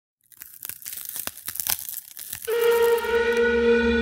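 Intro sound effect for an animated logo: about two seconds of irregular crackling, crinkling clicks, then a sustained musical tone with overtones comes in halfway through and holds.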